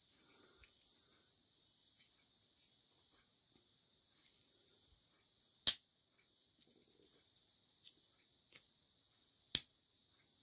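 Spyderco Byrd Harrier 2 back-lock folding knife being worked: two sharp clicks about four seconds apart, the second the loudest, as the blade is closed and opened and the back lock snaps, with a few fainter ticks of handling.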